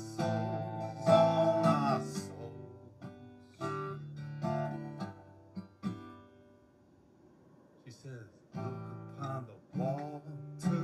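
Acoustic guitar strummed and picked as accompaniment to a man's singing, with a little of his voice near the start. The chords die away to a brief, almost silent pause about seven seconds in, then the strumming picks up again.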